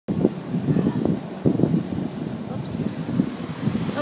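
Wind buffeting the microphone in uneven low gusts, with a brief hiss about two-thirds of the way through.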